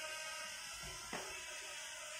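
A faint steady hum made of several level tones, with one sharp click a little over a second in as the flag is fastened to the flagpole rope.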